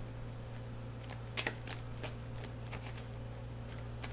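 A deck of tarot cards being shuffled by hand: soft, scattered card clicks, the sharpest about one and a half seconds in, over a steady low hum.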